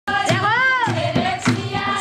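Dehati folk dance song: a voice sings a drawn-out note that rises and falls, over a steady beat of percussion and hand clapping.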